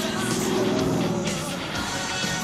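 Rock music with electric guitar, over which a Pontiac Firebird Trans Am's engine is heard as the car drives past, loudest in the first second and fading out soon after.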